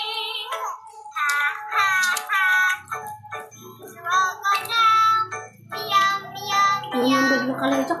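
A children's song playing: music with a child-like singing voice carrying the melody in short sung phrases over a steady backing.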